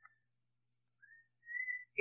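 Near silence with a faint steady hum; in the last second a faint thin whistling tone rises slightly in pitch, just before speech resumes.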